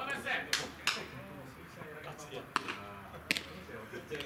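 Voices talking and calling on a baseball field, with four sharp clicks scattered through.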